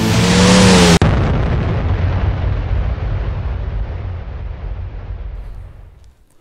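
The close of a rock intro music track: a loud held note for about a second, then a boom-like crash that rumbles and fades away over about five seconds.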